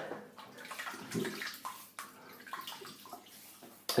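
Faint, irregular water splashing and trickling at a bathroom sink, with a few small knocks.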